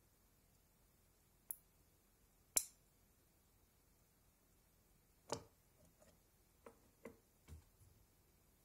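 Near silence broken by a few isolated sharp clicks, the loudest about two and a half seconds in, then a short run of lighter clicks and knocks near the end, as a DynaVap vaporizer is heated in an induction heater and then handled.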